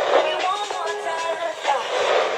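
Small pocket radio, powered by an 18650 cell, playing a broadcast station through its tiny speaker: a thin sound with little bass and no top end.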